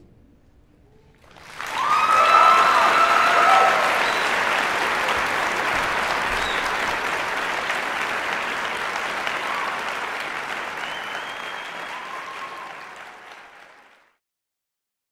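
Audience applause breaking out about a second and a half in after a brief hush, with a few whoops early on and again near the end, then fading and cutting off suddenly.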